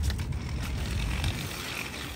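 Stroller wheels rolling over concrete pavement and a grooved curb ramp, a steady rolling noise broken by small clicks and rattles.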